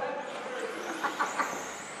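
Electric 2WD RC buggies running on the track: a steady hiss with a faint high motor whine that rises in pitch in the second half.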